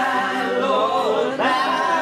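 A man singing a song live with acoustic guitar accompaniment, the voice holding long sung notes.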